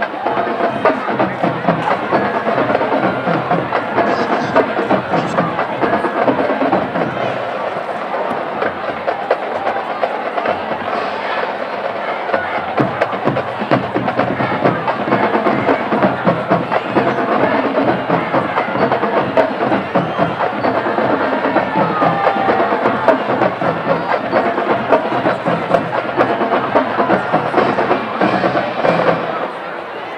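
A marching band playing, its drums keeping a busy, even beat under the horns, with a crowd talking in the background; the band breaks off near the end.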